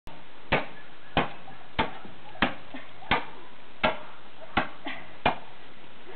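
A long-handled spade chopping at ice-crusted frozen ground: eight sharp strikes at an even pace, about one every two-thirds of a second, breaking up the ice.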